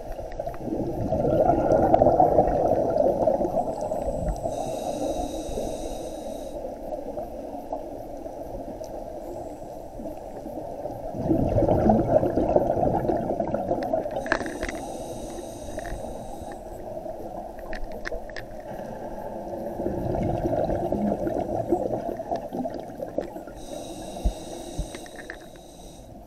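Scuba diver breathing through a regulator underwater: three slow breaths, each a long bubbling rush of exhaled air followed by a short hissing inhale through the regulator.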